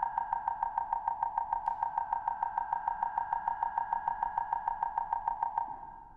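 Steady high synthesizer tone pulsing quickly, about six times a second, that fades out near the end.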